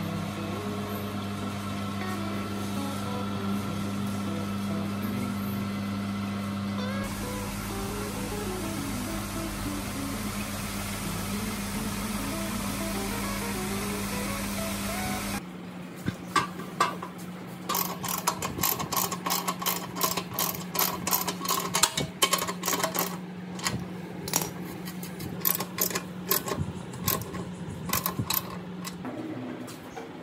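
A steady hum for about the first half, then a sudden change to a run of sharp metal knocks and clanks over a lower steady hum as a heavy steel tiller frame is handled and fitted onto a walking tractor's gearbox.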